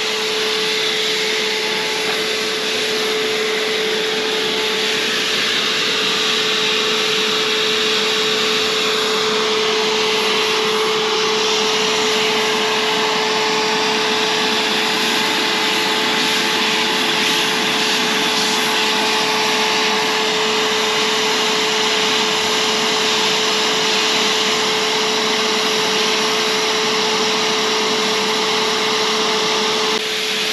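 Electric HVLP paint sprayer running steadily while spraying paint: a constant motor whine over the rush of air through the gun.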